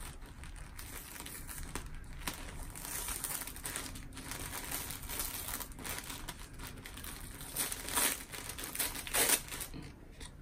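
Thin brown wrapping paper crinkling and crackling under fingers as a sticker stuck over it is picked at and peeled off, with a couple of louder crackles near the end.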